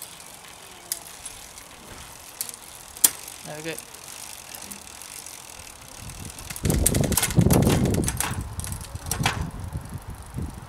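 A bicycle's 10-speed drivetrain turning, with the chain running over the cassette as the Shimano rear derailleur shifts between cogs and sharp clicks at the shifts. From about seven seconds the chain's running noise grows much louder for a couple of seconds, with clicks through it.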